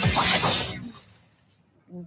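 A sudden bright crash from the trailer's soundtrack, dying away within about a second.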